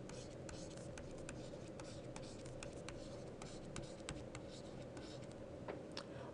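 Faint hand-writing sounds: irregular light taps and scratches of a pen as a row of numbers is written out, over a steady low hum.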